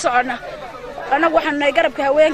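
A woman speaking, with a brief pause about half a second in.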